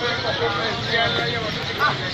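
People talking over steady street traffic noise.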